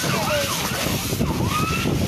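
Large house fire burning close by: a steady noisy rush with dense crackling. Faint siren wails rise over it, from emergency units arriving.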